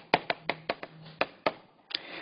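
Chalk tapping and scraping on a chalkboard as words are written: a quick, uneven run of about ten short, sharp taps.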